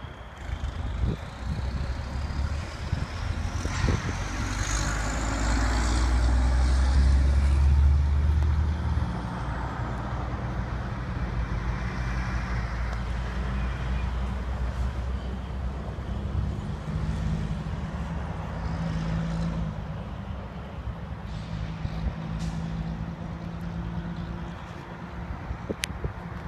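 A truck engine running on the lot, swelling louder for several seconds with a whine that rises and then falls away, before settling to a steady hum.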